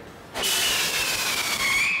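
Firework whistle burning: whistle composition pressed into the bottom of a tube, the rest of the tube resonating like an organ pipe. It starts suddenly about half a second in as a loud, shrill whistle over a rushing hiss, its pitch sliding slowly down.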